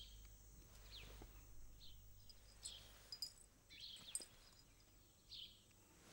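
Faint ambient birdsong: about half a dozen short, high, falling chirps scattered over a few seconds, over a faint low hum.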